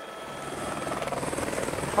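A helicopter hovering close by, its rotor beating in rapid, even pulses and growing steadily louder.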